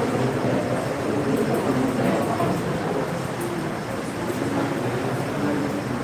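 A man's voice, talking over a steady background noise.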